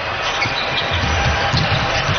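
A basketball being dribbled on a hardwood court, low thumps repeating over a steady bed of arena background noise.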